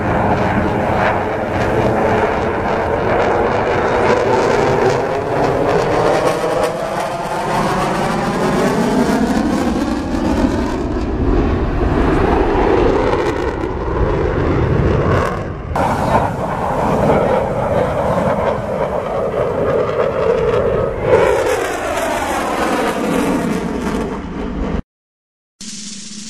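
Aermacchi MB-339 jet of the Frecce Tricolori display team flying overhead, its turbojet running loud and steady, the sound slowly sweeping in pitch as the aircraft passes and turns.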